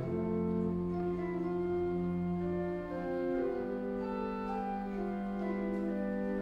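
Pipe organ playing slow, sustained chords that change smoothly from one to the next; the deep pedal bass drops out about three seconds in.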